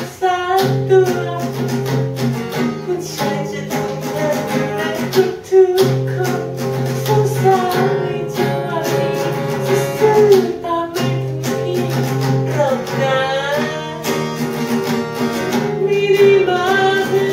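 Two acoustic guitars strummed together, with a woman and a man singing the melody over them.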